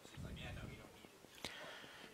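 Faint, distant speech from someone off-microphone, with a single short click about one and a half seconds in.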